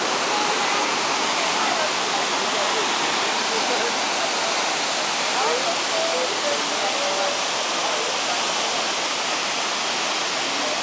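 Waterfall: a steady, dense rush of heavy falling water.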